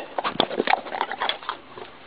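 Dog crunching a hard dog biscuit: a quick, irregular run of crunches that thins out near the end.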